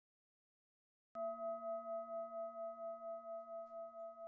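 A single struck metal tone rings out about a second in and sustains, wavering in a slow pulse about four times a second as it slowly fades.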